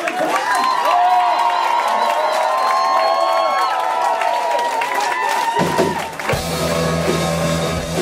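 Live electric rock band: a guitar plays alone at first with bending, sliding notes. About five and a half seconds in, bass and drums come in and the full band starts up.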